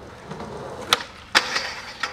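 Skateboard wheels rolling on concrete, then a sharp pop of the tail about a second in. A second clack follows, the board striking the steel handrail, and then a brief scrape.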